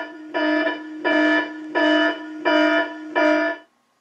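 A buzzy electronic tone held at one steady pitch, sounding in short pulses about five times at an even pace, then cutting off suddenly near the end.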